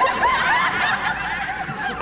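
An audience laughing, many voices overlapping, in response to a comedian's punchline.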